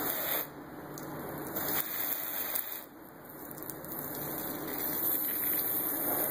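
Garden hose spraying water, hosing down a dog cage. The stream's loudness rises and falls, dipping briefly about three seconds in.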